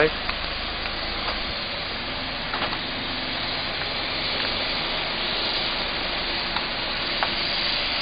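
A minivan creeping slowly across a car park with its engine idling, the tyres crackling steadily over grit on the concrete, with a few small clicks.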